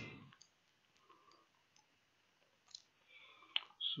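Faint computer mouse clicks, a few scattered ones with a sharper one near the end.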